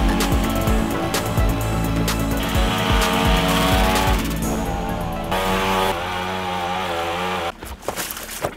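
Background music with a beat over a Honda four-stroke petrol hedge trimmer running while cutting hedge branches. The music drops out near the end.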